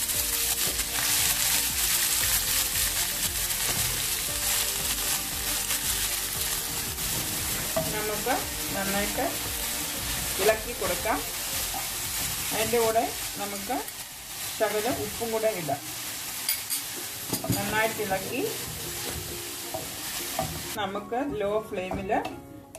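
Fresh fenugreek (methi) leaves sizzling in hot oil in a pan and being stirred. The sizzle is loudest for the first several seconds after the leaves go in, then dies down.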